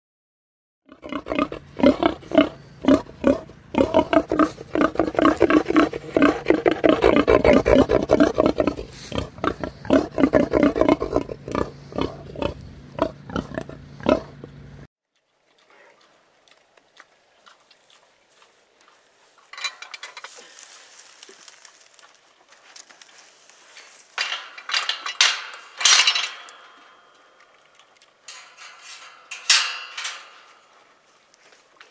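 A female pig in heat grunting loudly in a rapid string of short grunts for about fourteen seconds, ending in a sudden cut. After it come quieter clinks and clatter of a metal feed bowl and gate hardware, loudest near the end.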